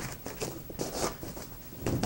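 Nylon strip softbox fabric being handled, giving a few short rustling rasps.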